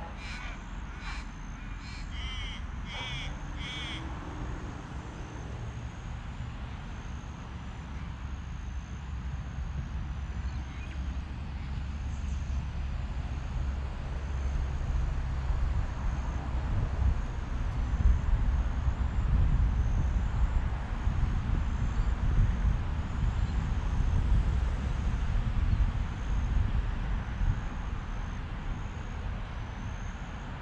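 A crow cawing several times in quick succession in the first few seconds, over a low, rough rumble that swells in the middle and eases toward the end.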